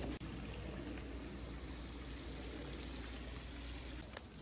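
Steady outdoor background noise: an even hiss with a low rumble underneath that stops abruptly at the end.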